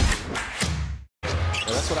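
Intro music fades out over the first second and cuts to a moment of silence, then live game audio begins: a basketball being dribbled on a hardwood court amid arena background noise.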